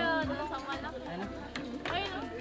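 Several young people chattering and talking over one another in a group, with a few light sharp clicks among the voices.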